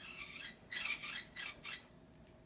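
A hand-made sound effect: a scratchy, hissy noise in four short bursts, the first about half a second long and the later ones shorter, standing for a baby bat crash-landing in a bird's nest.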